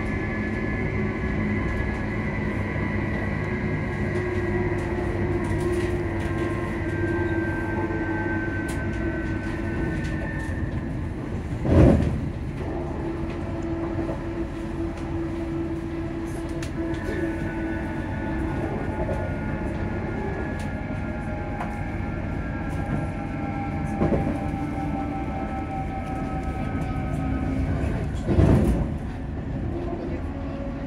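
On board a ScotRail Class 334 electric multiple unit while it runs: the rumble of wheels on track under a traction whine of several steady tones that slowly sink in pitch. Loud brief thumps break through about twelve seconds in, again about twelve seconds later, and once more shortly before the end.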